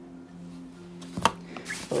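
Hands handling a fabric backpack pocket and the items in it: faint rustling with one sharp click about a second in, over a steady low hum.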